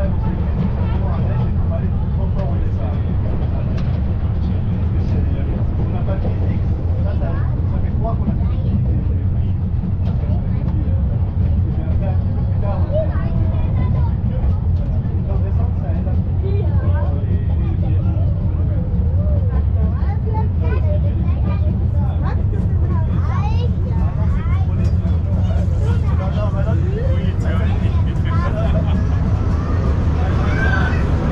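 Steady low rumble of the Brienz Rothorn Bahn rack-railway train in motion, heard from inside a passenger carriage, with passengers' voices chattering over it.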